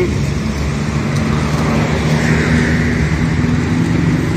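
Road traffic: a motor vehicle engine running steadily under an even wash of street noise, which swells briefly a little past the middle.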